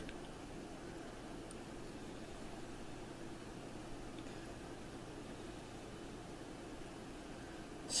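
Quiet room tone: a steady low hiss with a faint hum, with no distinct events.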